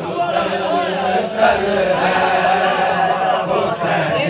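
A crowd of men chanting a noha together, many voices overlapping in a steady, unbroken drone.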